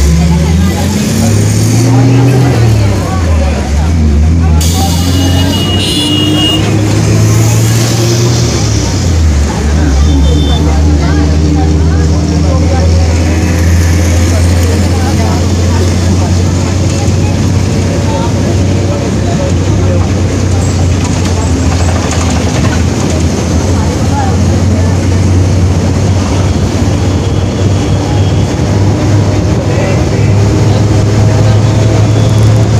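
A vehicle's engine running while under way in city traffic. Its pitch rises and falls through the first ten seconds as it speeds up and slows, then holds steady. A brief high tone sounds about five seconds in.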